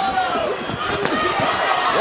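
Boxing-arena crowd and voices, with several short thuds of gloved punches landing at close range.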